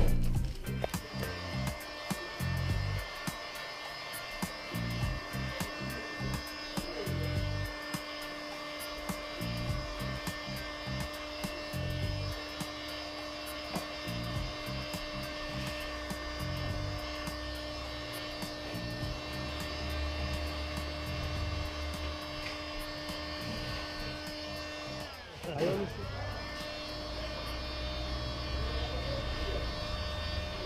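Heat gun running with a steady whine, used to shrink window tint film onto a car's rear glass. It cuts out briefly about 25 seconds in, then winds back up. Irregular low rumbling sits underneath.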